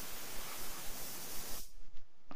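Steady high hiss of spray inside a CNC machining center working on a steel upper receiver, cutting off suddenly near the end.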